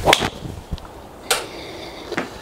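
The swish of a PXG 0811X driver swing ends in the sharp crack of the titanium clubhead striking a golf ball, a good, solid strike, heard as a quick double smack. One more sharp knock comes about a second later.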